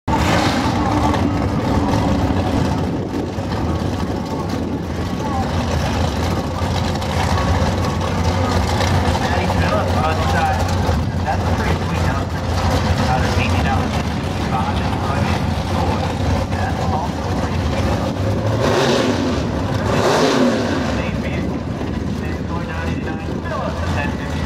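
Drag-race car engines running loudly at the starting line with a steady low drone, rising briefly in pitch twice near the end.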